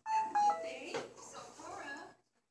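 A short electronic chime of three steady notes stepping down in pitch, then indistinct background speech.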